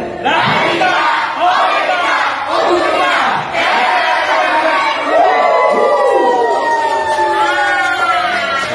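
A crowd of adults shouting a group yell together, many voices at once, ending in a long drawn-out shout that slowly falls in pitch.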